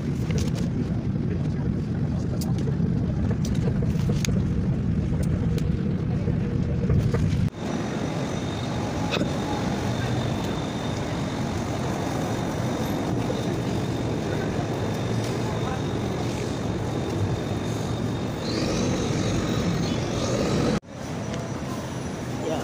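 Heavy low rumble of a train heard from inside the passenger car. After a cut about seven and a half seconds in, it gives way to city street traffic noise with a steady high tone.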